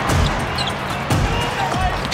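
A basketball being dribbled on a hardwood court, a few low thumps over steady arena crowd noise.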